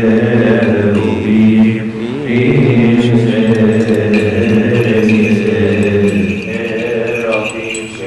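Coptic liturgical hymn chanted in Coptic, with long held, drawn-out notes and a brief break about two seconds in.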